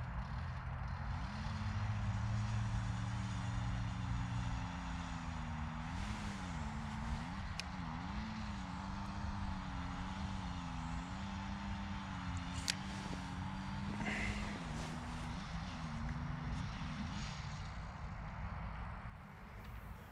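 An engine running steadily, its pitch wavering up and down through the middle and fading out near the end, with a couple of faint clicks.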